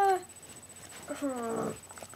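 A high voice holds a steady 'uhh' that breaks off just after the start. About a second later it gives a short, nonverbal vocal sound that falls in pitch.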